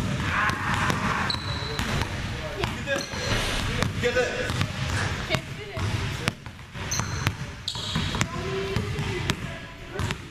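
A basketball dribbled repeatedly on a hardwood gym floor, a run of sharp bounces. Sneakers squeak briefly on the floor a few times.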